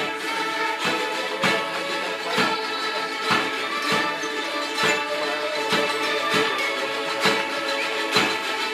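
A children's ukulele ensemble strumming a song in a steady rhythm of about two strums a second, with children's voices singing along.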